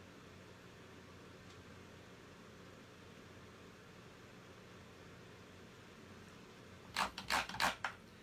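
Quiet room tone with a faint steady hum for most of the stretch. About seven seconds in comes a brief clatter of knocks as the wooden letter sign is shifted on the table.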